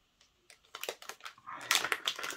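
Plastic packet crinkling with a run of sharp crackles, starting about half a second in, as a spray-gun filter is taken out of its bag.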